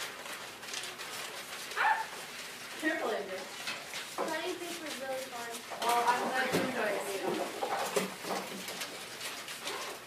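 Indistinct chatter of several children talking among themselves at once, with a few small clicks and knocks.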